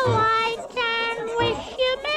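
A Christmas song playing: a child-like voice sings a string of long held notes over musical accompaniment.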